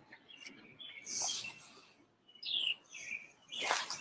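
Small birds chirping, short calls and quick falling notes scattered through, with a brief rustling hiss about a second in and a louder short rustle or knock near the end.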